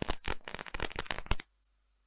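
A string of firecrackers going off: a rapid run of sharp cracks that thin out and stop about a second and a half in.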